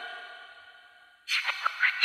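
A held chord of electronic tones fades away. About a second and a bit in, a brief cluster of sliding, falling tones follows.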